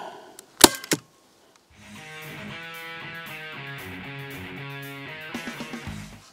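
A hand staple gun fires once into cowhide on a stool seat: a single sharp snap, with a lighter click just after it. From about two seconds in, background music plays.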